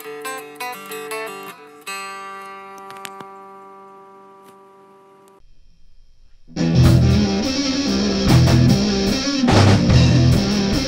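Clean guitar picking a few notes, then a chord left ringing and slowly fading. After a brief lull, about six and a half seconds in, the full band comes in loud with heavily distorted guitars and drums in a sludge-metal track.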